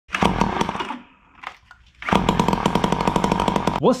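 Ryobi SS30 string trimmer's small two-stroke engine running in two spells: about a second, a short lull, then nearly two seconds more.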